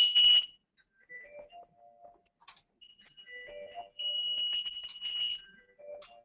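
Electronic alert tones from Alertus alert beacons and a VoIP phone signalling an all-clear, a pre-programmed tone set that differs from the lockdown alert. A steady high beep stops about half a second in. Short lower chime-like notes follow, then the high beep comes back about three seconds in and holds for over a second.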